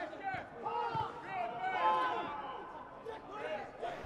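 Faint footballers' shouts and calls on the pitch, with no crowd noise behind them in the empty stadium.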